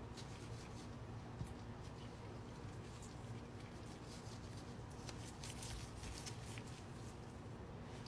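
Faint rustling and soft handling noises from gloved hands shaping and stuffing soft dough balls, with a few small clicks around the middle, over a steady low hum.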